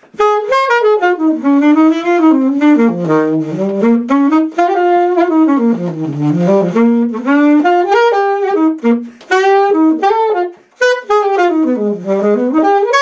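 Alto saxophone playing an unaccompanied jazz solo: quick runs of notes sweeping up and down, twice dipping down to low notes, with a brief breath break a little before the end.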